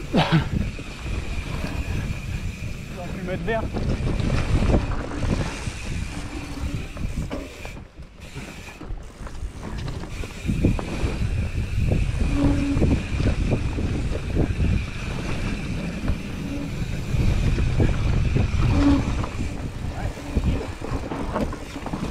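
Mountain bike riding down a rough dirt forest trail: heavy wind on the microphone, and the tyres and bike rattling and knocking over roots and ruts. A steady high-pitched buzz runs through most of it and drops out briefly in the middle.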